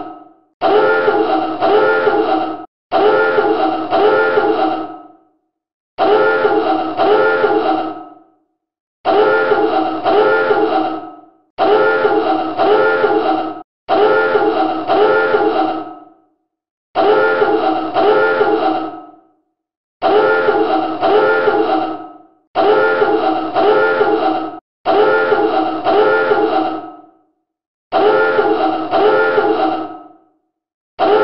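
Submarine dive alarm sounding over and over in blasts about two seconds long, about a dozen of them, separated by short silent gaps.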